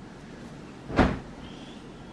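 A person flopping backward onto a hotel bed's mattress: one thump about a second in.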